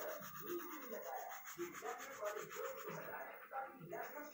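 Graphite pencil rubbing across paper in short, irregular strokes while drawing.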